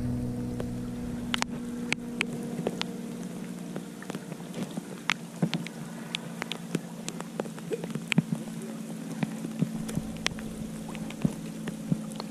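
Rain falling, with individual raindrops ticking sharply and irregularly close by, several a second. A steady low hum runs underneath.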